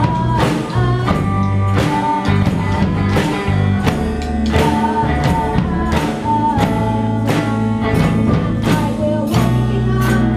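Live rock band playing a song: amplified electric guitar, bass guitar and a drum kit, with drum hits about twice a second.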